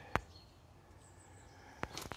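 Two short sharp plastic clicks about a second and a half apart, from handling a replacement VW T5 radiator grille and its brittle chrome trim strip, whose clips are cracking and snapping off.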